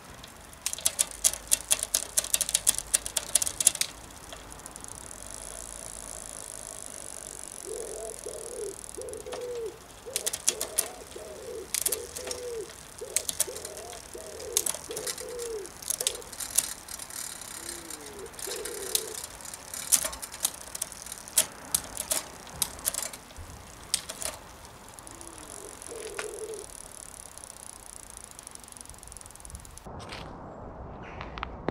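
Suntour rear derailleur shifting the chain across the cassette while the wheel is turned, with bursts of rapid chain and ratchet clicking and rattling as it drops from cog to cog; the shift limits have just been set. Background music plays under it.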